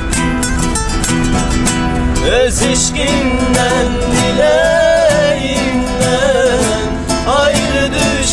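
Three acoustic guitars strummed together in a steady rhythm. A man's singing voice comes in over them about two seconds in and carries on through most of the rest.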